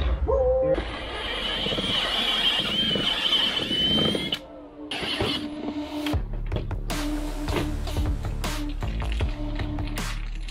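Cordless drill with a step bit boring through a plastic dry-box lid, a wavering high whine over grinding noise for about three seconds, stopping near the middle. Background music with a steady beat then takes over.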